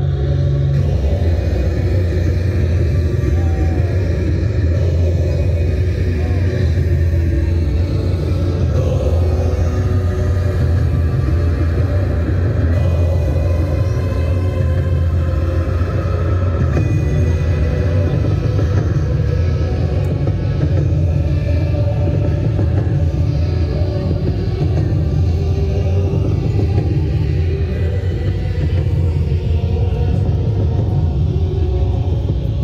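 Busy city plaza ambience at night: a loud, steady low rumble under ambient music from outdoor light installations, with people's voices mixed in.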